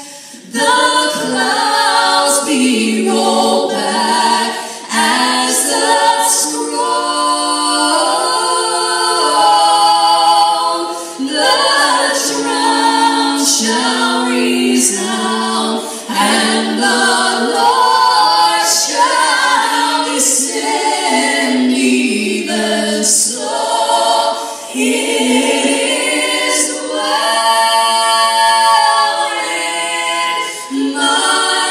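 Two women singing a cappella in close harmony, amplified through a PA in a large hall, in phrases separated by short breaths.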